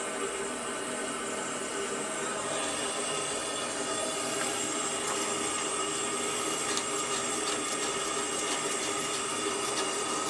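Water rushing through a copper supply line and a newly fitted ball valve as the sprinkler line is slowly refilled under mains pressure: a steady hiss that grows brighter a couple of seconds in, with light ticks in the second half.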